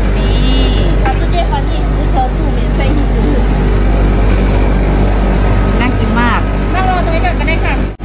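Busy street-food stall ambience: several people talking in the background over a steady low hum.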